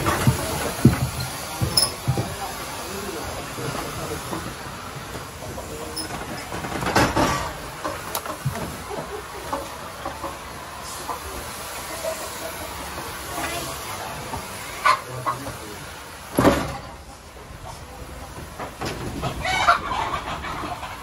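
Thermal fogging machine running steadily while it blows insecticide fog, with a few louder sudden noises about 7 and 16 seconds in.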